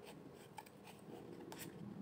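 Faint rubbing and a few light clicks from a deck of round tarot cards being shuffled and handled.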